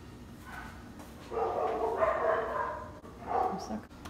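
An animal's drawn-out pitched cry, one long call starting about a second in and a shorter one near the end.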